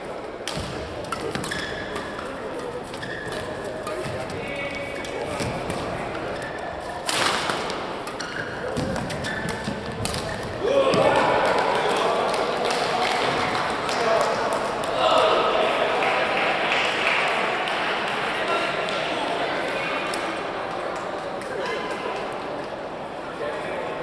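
Badminton rally: rackets strike the shuttlecock, with a loud hit about seven seconds in. From about eleven seconds, after the point, many voices shout and cheer in a large hall, fading over the following seconds.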